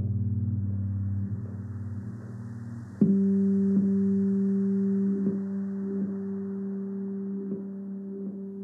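Slow ambient instrumental music of long held notes; about three seconds in, a deep new note is struck and rings on steadily.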